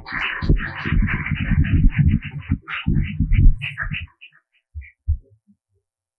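Handheld microphone being handled and fitted onto its stand: a run of close thumps and rubbing for about four seconds, then a few lighter knocks before it goes quiet.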